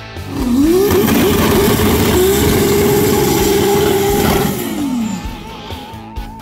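Car engine revving up quickly and held at a steady high pitch for about four seconds during a burnout, then dropping away near the end. Background rock music plays under it.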